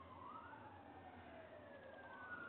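A faint wailing siren, its pitch sweeping up and falling away in slow cycles, a second sweep starting near the end.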